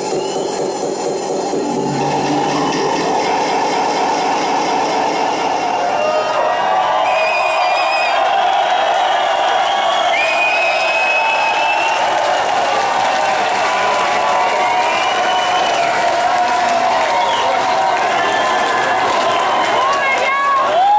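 Club crowd cheering and shouting, many voices at once. The techno's bass drops out about two seconds in, leaving mostly the crowd.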